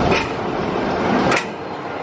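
Inverted steel roller coaster train running along its track, a steady rumble with a couple of sharp clacks; it drops off somewhat about a second and a half in.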